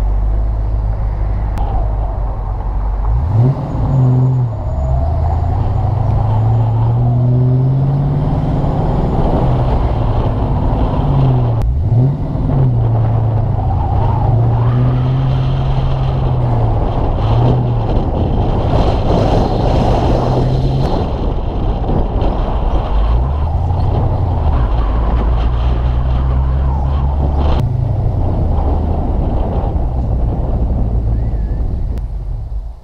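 Ford Mustang GT's V8 engine pulling away from a stop about three seconds in, its revs rising and falling several times, then running steadily at cruise and easing off again, over road noise. A few sharp knocks or rattles come through now and then from the worn car.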